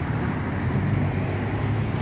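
Steady low engine rumble of street traffic, with no sharp events.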